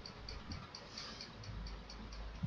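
Faint, steady ticking, high in pitch, about four to five ticks a second.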